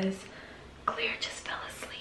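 A woman whispering: soft, breathy speech with little voice in it.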